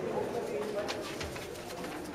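Murmur of spectators' voices in a large sports hall, with a couple of faint short knocks about a second in.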